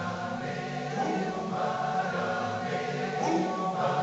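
Male voice choir singing a cappella in harmony: a soft passage of held chords that change every second or so.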